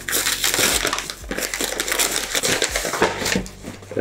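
Brown kraft-paper wrapping being torn open and crumpled by hand, a dense run of irregular crackling and rustling.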